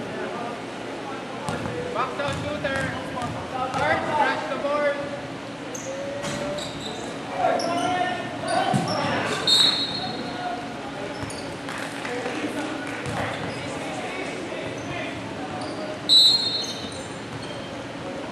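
A basketball bounces on a hardwood gym floor amid players' indistinct calls, echoing in a large hall. Two brief high squeaks come through, one about halfway and one near the end.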